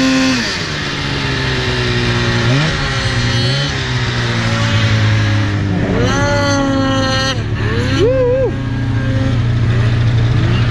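Polaris RMK 800 two-stroke snowmobile engine running under throttle in deep powder. It comes off high revs about half a second in and settles to a lower steady run, with short blips of revving around two and three and a half seconds in and again near six and eight seconds.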